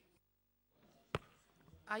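A single sharp click a little over a second in, the loudest sound here, set in faint room noise after a brief moment of dead silence; a woman's voice begins just at the end.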